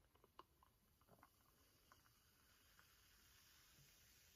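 Near silence: a protein shake being poured from a shaker bottle into a glass, heard only as a few faint, scattered soft ticks.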